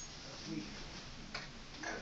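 Two sharp clicks about a second and a half apart, over a faint murmur of voices in the room.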